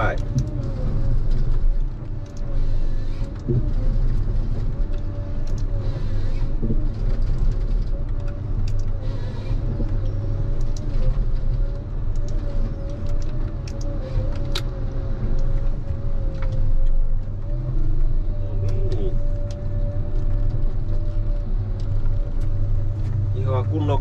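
Ponsse Scorpion King forest harvester running steadily from inside the cab, a low engine drone with a thin steady whine, while the H7 harvester head feeds and cuts stems. Occasional short knocks and clicks come from the head working the wood.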